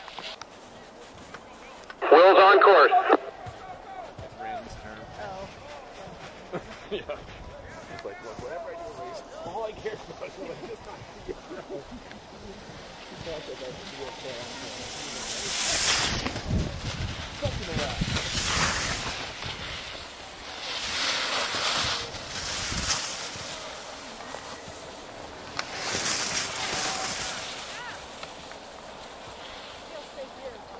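Ski edges scraping and carving on packed snow: four swishes of a second or two each in the second half, as a racer turns through the gates. About two seconds in there is a loud short shout, and faint voices follow.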